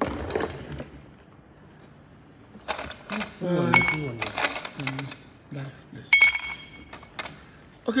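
A drinking glass clinking several times, a couple of the knocks ringing briefly, with a low voice talking in between.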